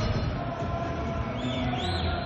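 Television broadcast transition sound effect for a replay wipe: a steady whoosh that sweeps upward near the end. Arena crowd murmur runs underneath.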